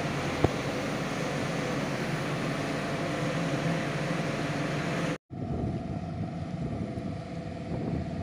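Steady background drone of factory machinery with wind rumbling on the microphone, with a single click just after the start. It drops out for a moment about five seconds in, then carries on with a steady hum.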